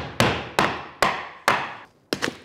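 Hammer knocking on a melamine-faced particleboard mold box to break it away from a cured epoxy casting. There are four sharp, evenly spaced blows, each ringing out briefly.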